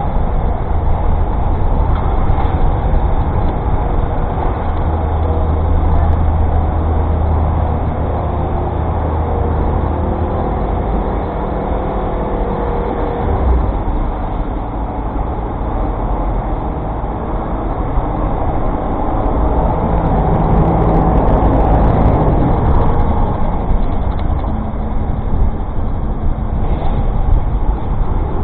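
Steady city street traffic heard from a moving bicycle, with the engines of taxis and vans close by and a deep rumble throughout. It grows louder twice, about a quarter of the way in and again past two-thirds.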